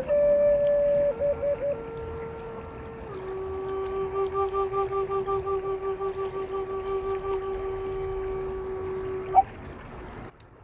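Native American flute playing a short descending phrase with quick trill ornaments, then settling on one long low note held for about six seconds with a steady pulsing vibrato. The note ends with a short bright chirp about nine seconds in, and the river's running water stays faintly underneath.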